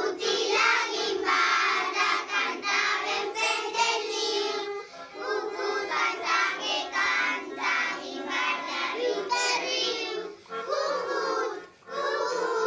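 A children's choir singing a song together, phrase after phrase, with brief breaks between lines.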